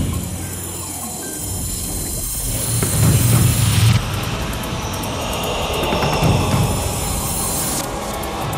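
Channel ident music with a low pulsing beat and whooshing sound effects. Two noisy sweeps build up, and each cuts off suddenly, about four seconds in and again near the end.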